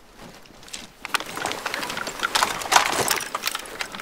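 Soldiers moving: footsteps and the rattle and knock of carried gear, a busy run of short clicks and knocks starting about a second in.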